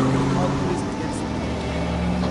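A car engine running as the car drives off.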